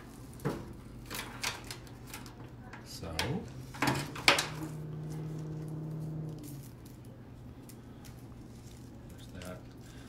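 Artificial flower stems being handled and set down on a wooden worktable: scattered sharp clicks and short rustles, the loudest a few seconds in. A low steady hum sounds for a couple of seconds near the middle.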